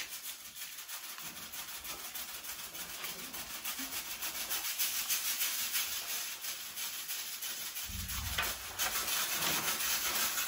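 A steady rubbing, scraping sound that grows gradually louder, with a low rumble joining in about eight seconds in.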